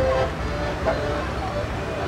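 Chatter of distant voices from a crowd over a steady low rumble.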